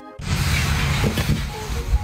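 A brief dropout, then rough, rumbling microphone noise from handheld outdoor phone footage, with background music underneath and a low thump near the end.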